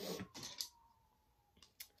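Quiet handling of objects: a faint rustle in the first moments, then near silence, and two small clicks shortly before the end.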